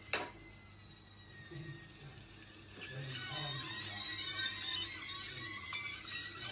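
Sausages sizzling in a frying pan, faintly at first and fuller from about halfway, with a sharp click just after the start.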